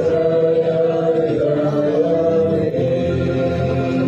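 A group of voices singing together in unison, a slow chant-like song with long held notes.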